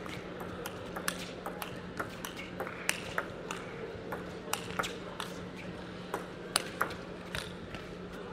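Table tennis rally: the ball strikes bat and table back and forth in sharp clicks, about two or three a second and some louder than others, over a steady low hum.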